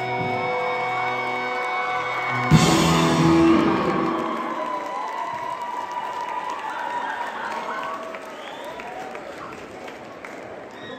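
Live rock band with electric guitars, bass and drum kit holding its final chord, ending about two and a half seconds in on a loud last hit with cymbals that rings out. An audience then applauds and cheers with whoops, fading toward the end.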